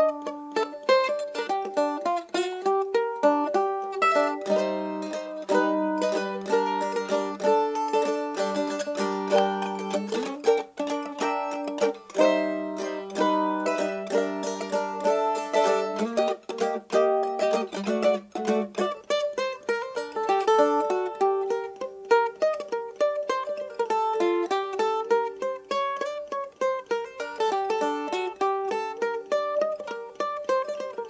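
An A-style mandolin with an Engelmann spruce top and quilted maple back, picked in a steady run of quick melody notes with no break.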